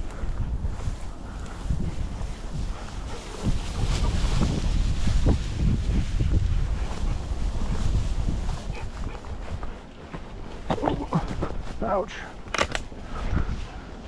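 Footsteps pushing through tall dry grass and brush, the stalks rustling and swishing against legs and clothing, with wind rumbling on the microphone.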